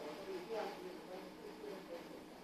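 A person's voice speaking quietly, the words not clear.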